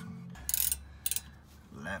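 A few faint metallic clicks and rattles, about half a second and a second in, as a ratchet and socket are fitted onto a rear brake caliper bolt.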